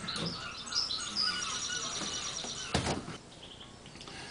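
Birds chirping in the background, with a single sharp knock about three seconds in as the bevel box's mounting is set down onto the chassis tube.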